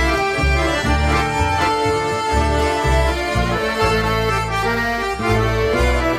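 Accordion ensemble playing a chamamé live, many accordions sounding together in steady full chords over a low bass line that steps from note to note.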